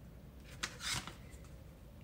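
Faint crinkle of a paper sachet of flan dessert mix being handled and lifted, two short rustles about half a second apart.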